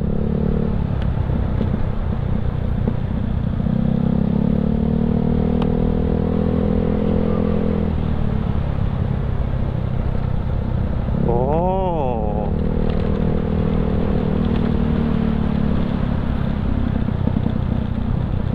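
Yamaha Mio Sporty scooter's small single-cylinder four-stroke engine running as it is ridden, heard from the rider's seat with wind and road noise. It eases off about eight seconds in and picks up again a few seconds later.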